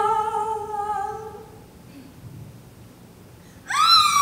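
A young female voice humming one held note that fades out about a second and a half in. Near the end a loud high vocal note slides up and then falls.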